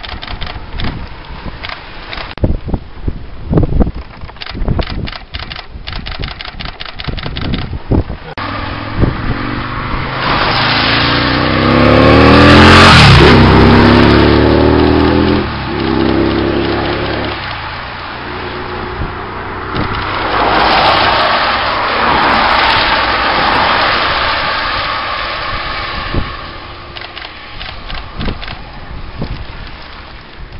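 A motor vehicle drives past close by on a wet road. Its engine note swells to a peak about halfway through and drops in pitch as it goes by, with tyres hissing on the wet tarmac. A second, weaker rush of tyre hiss follows a few seconds later.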